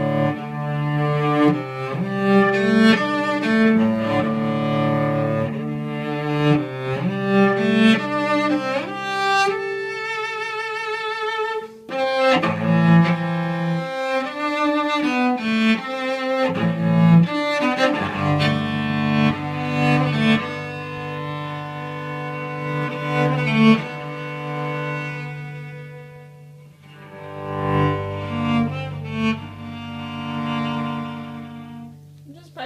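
Solo cello played with the bow: a slow melody of sustained notes with vibrato, with a high note held with wide vibrato about a third of the way in and a short let-up in the playing near the end.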